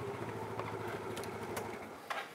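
Motor scooter engine idling with a low, steady hum and a few faint clicks over it.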